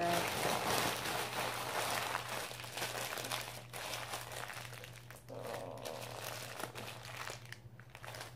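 Crumpled wrapping being squeezed and handled in the hand close to the microphone, crinkling and crackling unevenly. It is loudest in the first few seconds and softer towards the end.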